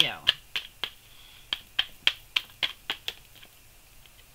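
A tarot deck being shuffled by hand: a steady run of sharp card slaps, about three or four a second, that stops shortly before the end.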